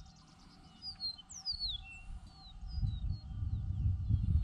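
Wild birds calling: a string of thin, high chirps and short falling whistles, with one longer down-slurred note about one and a half seconds in. A low rumble builds under them in the second half.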